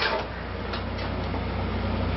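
A steady low hum under an even hiss, with no speech.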